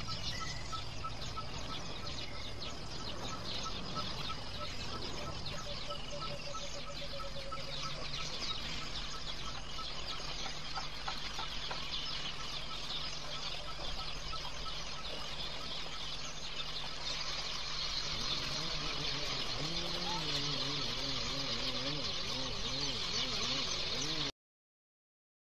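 A steady high hiss with faint, evenly repeated bird-like calls, then a wavering, voice-like call during the last few seconds.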